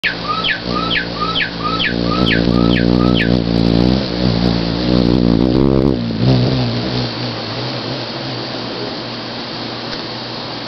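Male black-chinned hummingbird's wings humming as it hovers at close range, a low buzz that wavers in pitch as the bird shifts and stops about seven seconds in. Over the first three seconds another bird sings a run of about eight downward-slurred notes, each followed by a short chirp.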